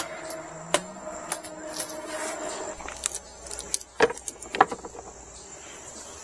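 Handling noise from a folded fabric solar panel and its foam packing being lifted and moved: scattered light clicks and knocks over a faint steady hum.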